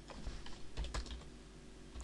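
Computer keyboard typing: a short run of faint keystrokes in the first second or so, then quieter.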